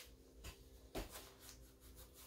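Near silence: room tone with a faint steady hum and a couple of faint soft clicks or rubs, about half a second and a second in.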